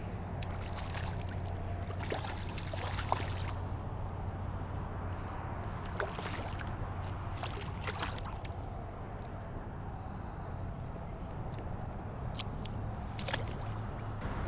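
A hooked spotted seatrout splashes and thrashes at the surface of shallow water, and water sloshes as it is drawn in and handled, with a few short, sharp splashes. A steady low rumble sits underneath.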